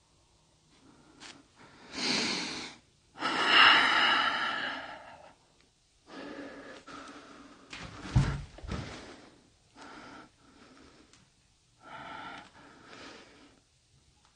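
A person breathing heavily and close to the microphone, in several long, noisy breaths, the loudest between about two and five seconds in. A short low thump comes about eight seconds in.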